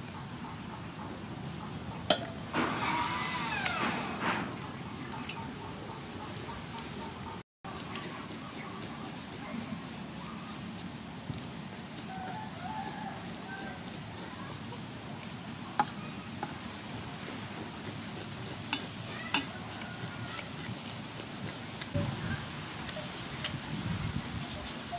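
Kitchen scissors cleaning a raw sea fish: the blade scrapes off scales and snips, making a run of small sharp clicks and scrapes that grows dense over the last several seconds, over steady outdoor background noise. A pitched call that bends in pitch sounds about three seconds in.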